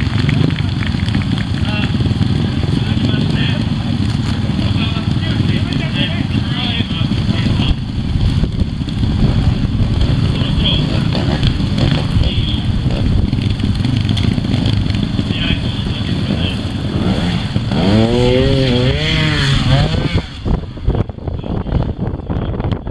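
A trials motorcycle engine running with voices chattering around it, revving up and down several times near the end.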